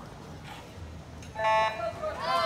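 An electronic swim-start horn sounds one short, loud beep about a third of a second long, about one and a half seconds in, signalling the start of the race; a fainter short tone follows just after.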